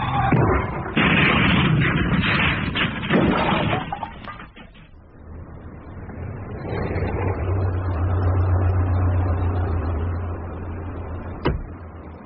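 Sound effects of a car crashing and rolling over: a run of heavy crashing impacts for about four seconds, then a low steady rumble, with one sharp click near the end.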